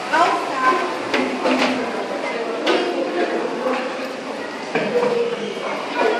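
Several people talking at once in a crowd, no single voice clear, with a few light clicks and knocks among the voices.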